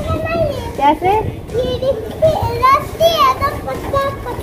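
A small child and a woman vocalising in high, sing-song voices, the pitch swooping up and down in short phrases, as the child plays in a string hammock swing.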